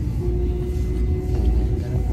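Commuter train running, a steady low rumble, with a single note held over it from about a quarter second in.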